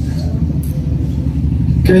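A steady low rumble fills a pause in a man's speech in a large hall, and his voice comes back in near the end.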